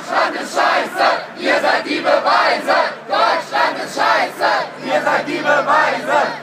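Crowd of protesters chanting and shouting in unison, loud and rhythmic, about two shouted syllables a second.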